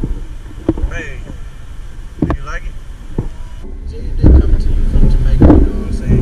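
Low rumble of wind on the camera microphone during a chair lift ride, loudest in the second half, with short bursts of indistinct voices.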